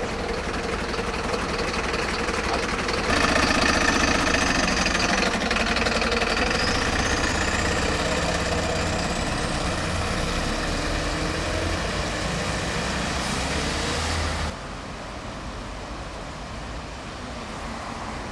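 Vehicle engine running amid street traffic noise, with a thin high whine that slowly rises in pitch midway. The louder part cuts off abruptly near the end, leaving a quieter steady outdoor background.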